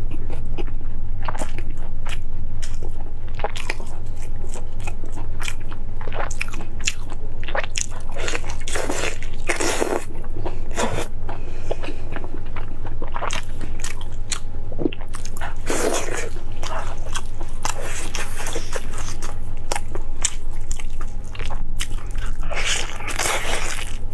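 A person chewing and biting into braised meat on the bone close to a clip-on microphone: irregular wet smacks, bites and small crunches throughout. A steady low hum runs underneath.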